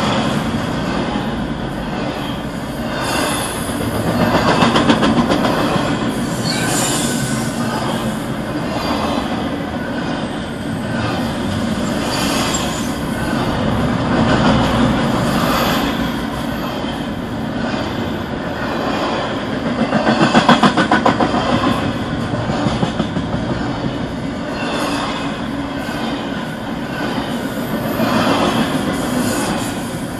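Double-stack intermodal freight train rolling past at steady speed: a continuous rumble and clatter of wheels on the rail, swelling and easing every few seconds, with brief high wheel squeal at times.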